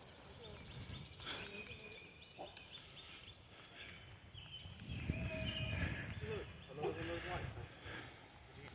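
Quiet outdoor background with faint, brief voices. A low rumble swells briefly past the middle.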